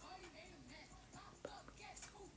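Near silence with a faint voice murmuring close to a whisper, and a small click about one and a half seconds in.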